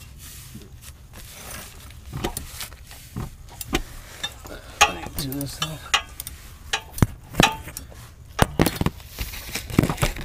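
Tools and metal parts clicking, clinking and knocking in irregular sharp strikes while bolts are being fitted on the underside of a car, with some rustling handling noise.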